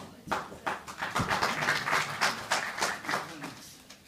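Applause from a small audience in a room: a run of hand claps starting just after the beginning and dying away near the end, with some voices underneath.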